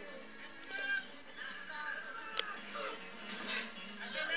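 Boys shouting and yelling in a scuffle, from a film soundtrack heard through a screen's speaker, with one sharp click about two and a half seconds in.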